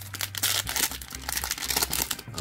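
Plastic foil wrapper of a trading card pack crinkling and tearing as it is ripped open by hand.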